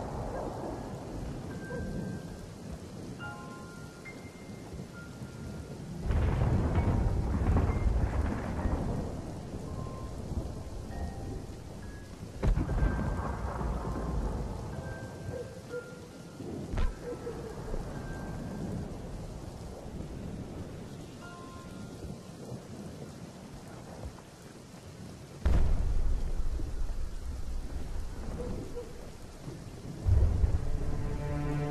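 Thunderstorm: steady rain with loud, sudden rolls of thunder starting about six, twelve and a half and twenty-five seconds in, and a sharp crack in between.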